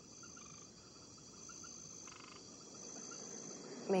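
Faint ambience of insects and frogs: a high, thin insect whine that comes and goes every second or so, over small quick frog calls and a short pulsed chirp about two seconds in.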